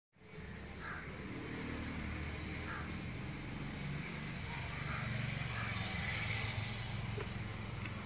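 Steady low outdoor rumble of distant road traffic, with a few faint short high calls scattered through it.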